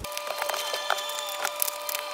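Oracle cards being handled on a table: scattered light clicks and snaps of card stock, over a faint steady high-pitched hum.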